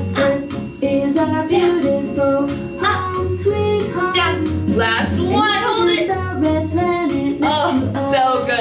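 Children's song about the planets: a woman singing a melody over an instrumental backing with a steady bass line.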